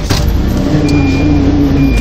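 Small car driving, with engine and road rumble heard from inside the cabin. A sharp knock comes right at the start, and a steady low hum joins the rumble for the second half.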